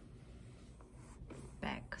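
Faint handling of a leather handbag: a hand rubbing and sliding over the pebbled leather as the bag is turned, with a quiet rustle. A woman starts to speak near the end.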